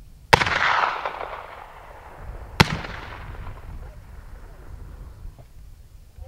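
Two black-powder muzzleloading rifle shots about two seconds apart, each with an echoing tail; the first tail is long and loud, the second is shorter.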